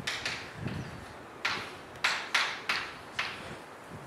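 Chalk writing on a blackboard: about eight short, sharp taps and scrapes at an uneven pace, each fading quickly.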